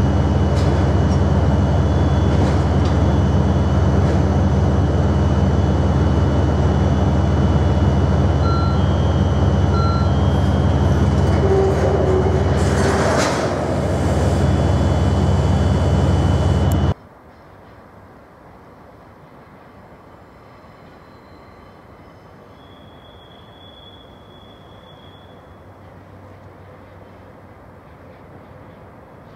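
Freight train of oil tank wagons rolling past at close range, a loud, steady rumble of wheels on rail. About 17 s in, the sound cuts off abruptly to a much quieter steady background.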